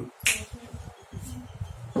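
A single short, sharp click about a quarter second in, followed by quiet room tone with a faint low rumble.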